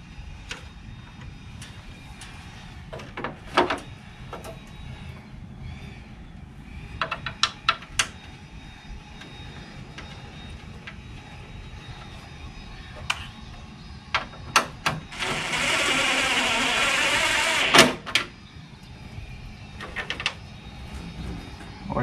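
Scattered plastic clicks and knocks as a replacement headlight assembly is handled and fitted into the front of a pickup-style SUV. Near the end comes a loud, even noise lasting about two and a half seconds.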